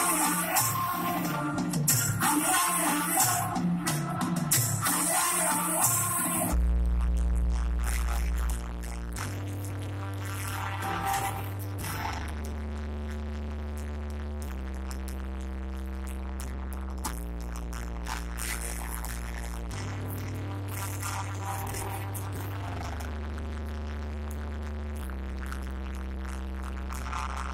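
Live band music through a concert PA, heard from the audience. A busy, loud passage stops abruptly about six seconds in, leaving slow, held low bass notes that change every two to three seconds.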